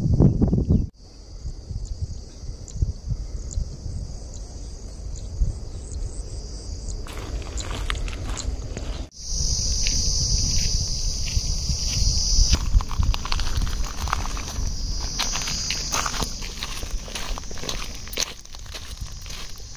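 Footsteps crunching on sand and gravel, with wind rumbling on the microphone and a steady high-pitched insect drone. The sound changes abruptly twice, about a second in and about halfway through.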